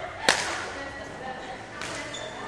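A badminton racket striking a shuttlecock: one sharp crack about a third of a second in, followed by a fainter click near the end.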